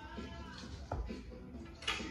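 Quiet background music, with a single dart thudding into the dartboard about a second in.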